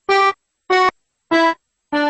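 Accordion playing three short, detached chords about half a second apart, with silence between them. A held chord begins near the end.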